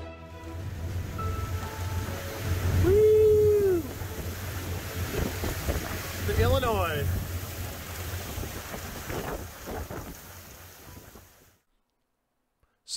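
Cabin cruiser running underway on a river, heard from the flybridge: a steady low engine drone under heavy wind noise on the microphone. The sound fades out near the end.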